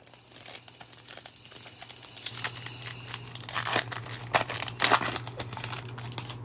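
A 2021 Topps Series 1 baseball card pack's wrapper being torn open and crinkled by hand: a run of crackles that grows louder toward the middle.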